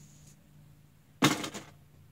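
A single short, loud thump a little over a second in, over a low steady hum.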